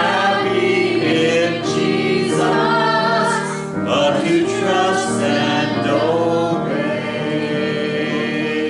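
Church congregation singing a hymn together, with long held notes.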